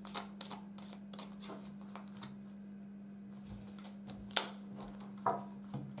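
Tarot cards being shuffled by hand and drawn from the deck: soft scattered flicks and slides, with a sharp card snap about four seconds in and another click a second later.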